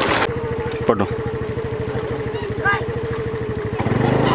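A motor vehicle's engine running steadily, a fast, even low pulse with a steady hum above it. A short rising-and-falling cry comes about a second in.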